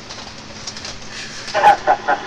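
Steady radio static hiss, then about a second and a half in a man starts laughing in quick, rhythmic bursts.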